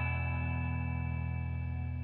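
An open E major chord on guitar, ringing out after a single strum and slowly fading.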